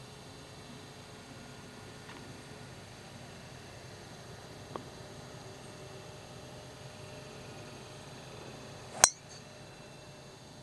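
Steady faint outdoor background, then about nine seconds in a single sharp, loud crack of a golf club striking the ball on a tee shot. A much fainter click comes a few seconds earlier.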